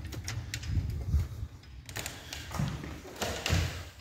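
A house's screen door and front door being opened and walked through: a string of clicks, knocks and low thumps.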